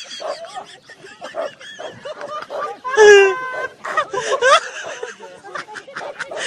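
Several men shouting and exclaiming excitedly, with one loud, high, drawn-out cry about three seconds in.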